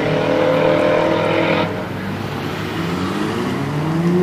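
Drag-racing car engine held at high revs, then lifting off about one and a half seconds in, followed by another engine revving up, rising in pitch, near the end.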